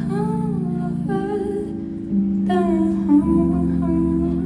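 Live solo performance: a woman's voice singing long, wavering notes without clear words over sustained Korg keyboard chords. The chords change about a second in and again near three seconds, and the voice pauses briefly in the middle.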